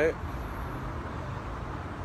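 Steady road-traffic noise from nearby passing cars, an even rumble and hiss.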